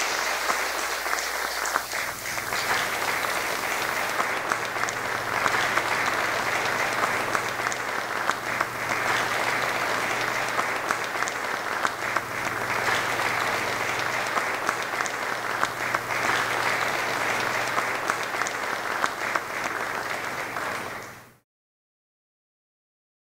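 Audience applauding steadily and at length after the end of a speech, until the sound fades out sharply near the end.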